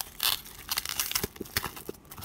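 A plastic courier mailer being torn open by hand: a rip about a quarter second in, then scattered crinkling of the plastic.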